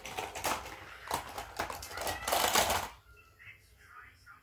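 Quick clicking and rustling of small plastic toy cars and track parts being handled, loudest just before it stops about three seconds in.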